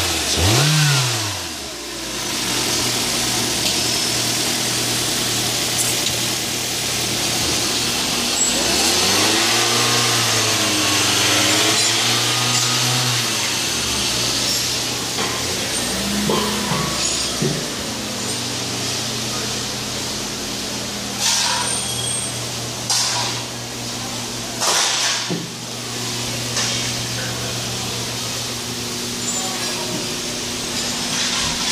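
2015 Toyota Corolla's 1.8-litre four-cylinder engine running: revved twice in quick blips right at the start, revved up and down again from about nine to fourteen seconds in, and otherwise idling steadily. A few sharp knocks come in the second half.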